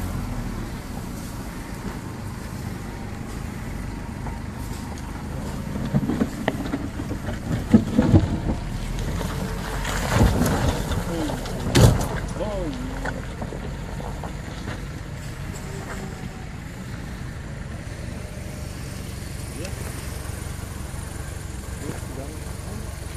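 Vehicle engine running steadily at low revs, with a run of loud knocks and thumps in the middle as the vehicle crawls over rough, rutted ground.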